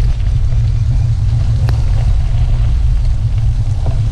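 Steady low rumble from wind and road buffeting on a bicycle-mounted camera as it rides a wet gravel road, with a single sharp click from the bike about a second and a half in.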